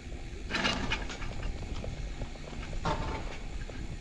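Mountain bike towed uphill by a T-bar drag lift, its tyres rolling and crunching over a gravel track, with small rattles and ticks from the bike. Two louder bursts of noise come about half a second in and just before three seconds.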